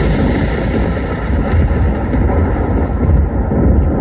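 Loud, steady rumbling roar of a dramatic sound effect, heaviest in the low end.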